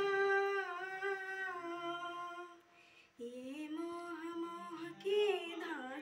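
A young woman's solo voice singing unaccompanied, holding a long drawn-out note, breaking off briefly about halfway, then holding another note that rises and ends in quick turns.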